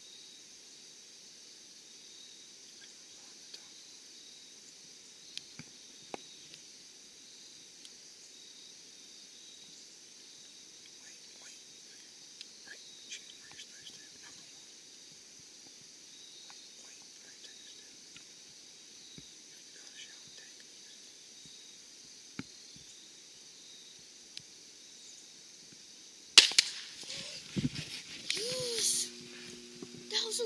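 Steady chirring of insects over a quiet field, then a single sudden, loud shot about 26 seconds in: a hunter's shot at a whitetail buck. Rustling and handling noise follow as the shooter and camera move.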